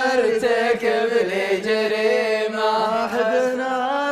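Unaccompanied male voice chanting Arabic poetry, holding long, wavering, drawn-out notes.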